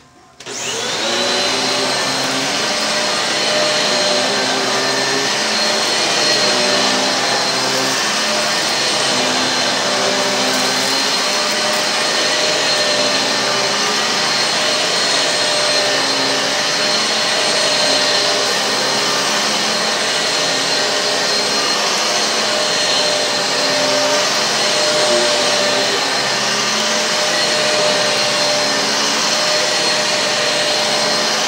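Shark Infinity bagless upright vacuum switched on, its motor spinning up within about a second to a loud, steady high whine. It then keeps running with slight rises and falls in pitch as it is pushed back and forth over carpet.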